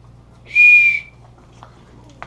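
A small figurine whistle blown once, about half a second in: one short, steady high note with a breathy hiss, lasting about half a second.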